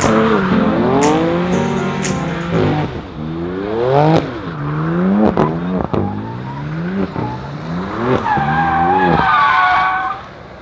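BMW M4 doing donuts, its twin-turbo straight-six revving up in rising sweeps about once a second and dropping back between them. Near the end the spinning rear tyres squeal loudly in a wavering howl.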